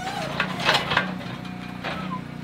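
Steel clanks and rattles of an Arrowquip Powerlock squeeze chute's headgate as a cow is caught in it, a quick run of sharp knocks about half a second in, over a steady low hum.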